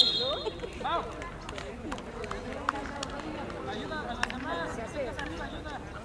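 Voices calling and chattering at a distance, with a few short sharp clicks.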